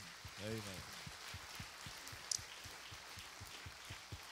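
Congregation applauding softly: an even patter of many hands clapping, with a brief voice near the start.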